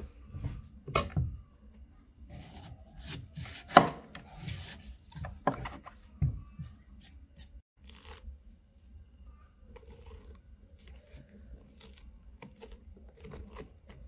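Hands scraping and scooping seeds and stringy pulp out of a hollowed pumpkin, with knocks of the pumpkin against a wooden cutting board. The handling is busiest in the first half, with the loudest knock about four seconds in, and turns to quieter rustling and scraping in the second half.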